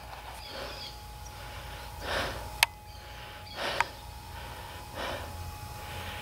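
A person breathing close to the microphone: four breaths about a second and a half apart. Two sharp clicks fall between them, and a faint steady tone runs underneath.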